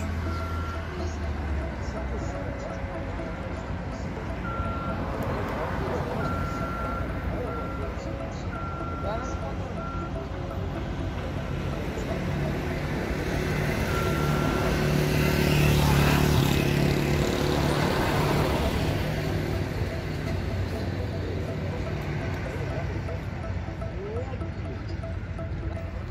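Construction-site din with a high electronic warning beeper sounding in irregular short and longer beeps, mostly in the first half. A vehicle passes close by, building to its loudest about two-thirds of the way through and then fading.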